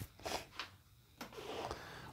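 Faint handling noise: short rustles against the padded nylon gig bag and a light click about a second in, as a hand reaches for the guitar lying in it.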